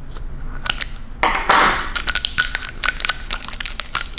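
Scissors snipping and stiff plastic wrapping being cut and pulled off a lipstick tube: a run of sharp clicks and crackles, with a denser crinkling rustle about a second and a half in.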